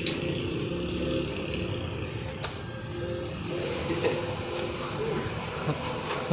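Steady background noise with faint music: a few held notes sound over an even rumble.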